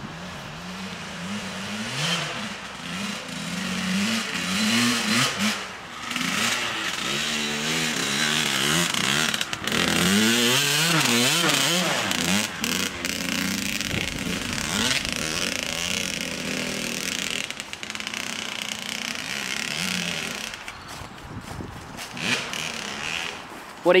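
Kawasaki KX100 dirt bike's two-stroke engine revving up and easing off over and over as it is ridden hard, loudest as it passes close about ten seconds in.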